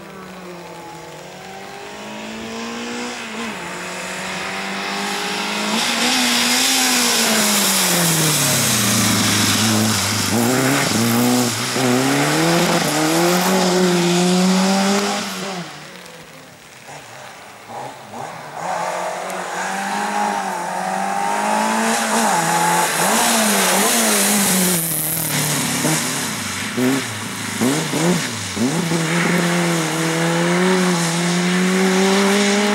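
Peugeot 205 slalom car's four-cylinder engine revving hard and falling back again and again as it is driven through the cones, with a hiss of tyres on wet tarmac. The engine sound drops away about halfway through, then builds again. Near the end it comes as quick, choppy blips.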